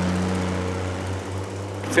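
Schlüter tractor's diesel engine running steadily under load while harvesting maize, a deep even drone that eases slightly in the second half.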